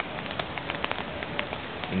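Tropical-storm rain coming down: a steady hiss with many sharp, scattered ticks of drops striking.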